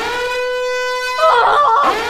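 Loud alarm going off with a steady, horn-like buzzing tone that starts suddenly and cuts out briefly near the end before sounding again. About a second in, a person's wavering cry joins it.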